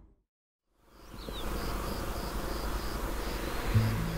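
Audio fades to silence at a cut, then outdoor field ambience fades in: a steady hiss with an insect chirping in a regular series, about four short high chirps a second. Music with low notes starts near the end.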